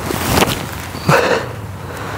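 Wind rushing over the microphone, with a brief sharp rush of sound about half a second in as a disc golf distance driver is thrown, then a heavy sigh about a second in.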